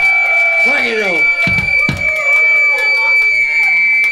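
A break between numbers at a live punk gig: voices over a steady high-pitched tone from the band's amplification, with two low drum thumps about a second and a half in.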